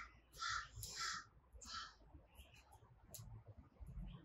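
A bird calling faintly in the surrounding bush: three short, harsh calls in the first two seconds, then only a few weaker traces.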